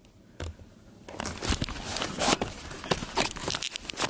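Rustling and scraping handling noise as the camera is picked up and brought close, with clothing brushing the microphone. It starts with a single click about half a second in and turns into steady scratchy rustling from about a second in.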